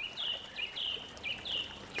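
A bird chirping in the background: four short, high chirps, evenly spaced about half a second apart.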